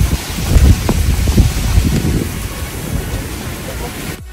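Wind buffeting the microphone outdoors: an irregular low rumble over a steady hiss, loudest in the first couple of seconds.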